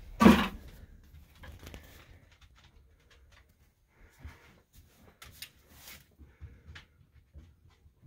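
A short, loud rustling burst right at the start, then faint scattered clicks and rustles of handling with quiet gaps between.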